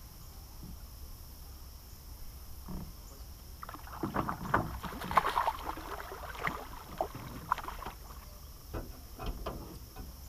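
A rainbow trout thrashing and splashing at the surface as it is scooped into a landing net. The irregular splashes start about three and a half seconds in, are strongest for the next few seconds and trail off into a few last splashes near the end.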